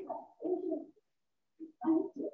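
A person's voice making short, low, hummed hesitation syllables between words.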